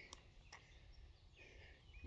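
Near silence: faint outdoor background noise.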